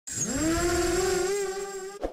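A buzzing whine that rises quickly in pitch, then holds steady and fades toward the end: an intro sound effect.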